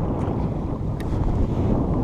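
Wind buffeting the microphone in a low, steady rumble, with one faint knock about a second in.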